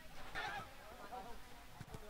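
Faint, distant shouting voices of players on an outdoor football pitch, heard over low ambient background.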